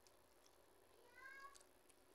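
Near silence: room tone, with a brief, faint, high-pitched call about a second in, lasting about half a second.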